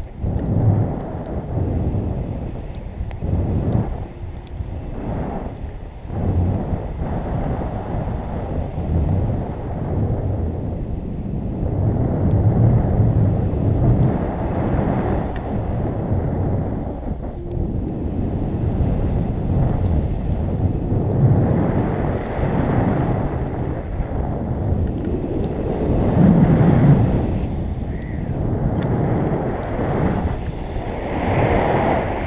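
Wind rushing over the camera microphone from the airflow of a tandem paraglider in flight. It is a loud, deep buffeting that surges and eases irregularly, with the strongest gust near the end.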